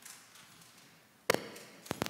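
Two sharp knocks about half a second apart, the first the louder, against quiet room noise.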